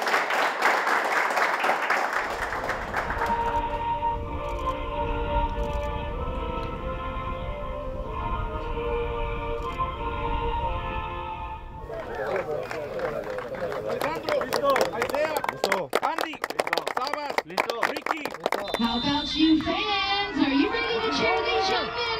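A group of players yelling together in a huddle, then background music with steady held notes. About halfway through, this gives way to many overlapping voices with scattered hand claps from a soccer field crowd.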